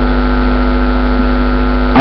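Steady electrical mains hum: a constant low buzz with a ladder of overtones, unchanging in level.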